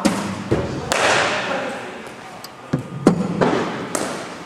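Sharp thuds of cricket balls striking in an indoor practice net, the loudest about a second in, ringing on in the hall's echo; a few more knocks follow near the three-second mark.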